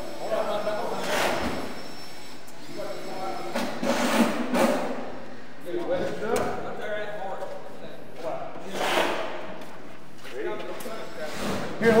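Men calling out to each other as they push a large foam-core wall panel upright by hand, with a few dull thumps and knocks from the panel and its framing scattered through.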